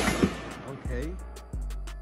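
An AR-style rifle shot ringing out and dying away over the first half second, with a small click just after. Background music and a voice come in underneath.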